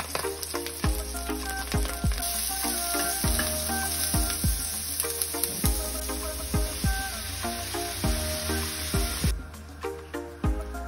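Chopped red onion and garlic sizzling in hot oil in a frying pan, over background music with a steady beat. The sizzle starts about two seconds in and cuts off suddenly near the end.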